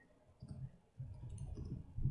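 Faint computer mouse clicks, a few soft clicks with a low thud-like rumble under them in the second half.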